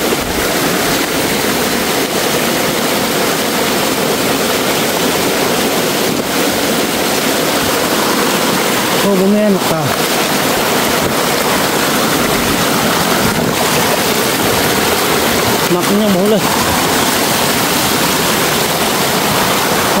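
Small forest stream rushing over rocks and a little cascade: a steady, loud hiss of running water.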